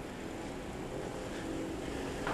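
Steady outdoor background noise: a low, uneven rumble under a soft even hiss, with no distinct footsteps or knocks standing out.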